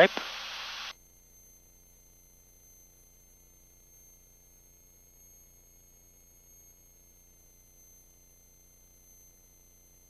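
Headset intercom hiss that cuts off sharply about a second in as the voice-activated mic closes, then near silence with only faint steady high electronic tones on the line.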